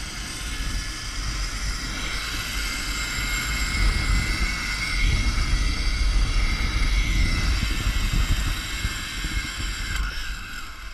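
Zipline trolley running along the steel cable with a steady high whine, under a loud rush of wind on the microphone that is strongest in the middle of the ride.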